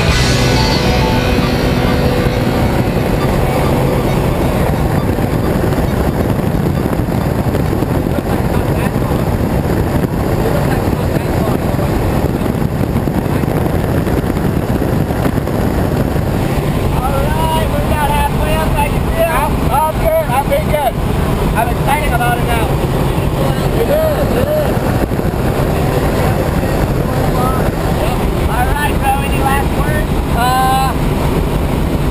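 A small high-wing propeller plane's engine droning steadily in flight, mixed with loud airflow noise during the climb to jump altitude.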